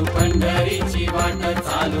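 Marathi devotional song to Vitthal: singing over a steady drum beat and bass.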